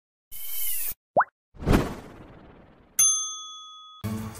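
Animated logo intro sound effects: a short whoosh, a quick rising pop, a sudden swoosh hit that fades, then a single bright chime about three seconds in, ringing as it dies away.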